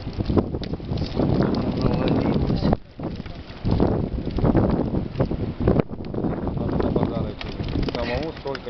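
Wind buffeting the microphone, with low background voices and short knocks and rustles as a wet keepnet of crucian carp is handled and tipped into a plastic bucket.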